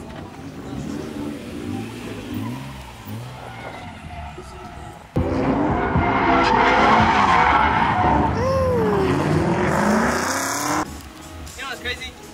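VQ V6 engine of a swapped Nissan 240SX running and revving, heard from inside the cabin. About five seconds in comes a sudden, much louder stretch of the car drifting: the engine revs hard and the tires squeal and skid. This stretch cuts off abruptly about a second before the end.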